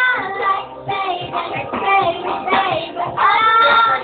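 A young boy singing a pop song over music, with long held notes near the start and again about three seconds in.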